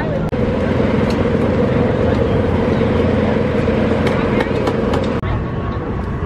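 A steady mechanical hum with people talking over it outdoors. The sound breaks off for an instant twice, at about a third of a second in and near the end.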